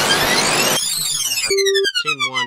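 Glitchy logo-bumper sound effect: a sudden burst of noise with whooshing pitch sweeps gliding up and down across each other, then a short steady beep about one and a half seconds in.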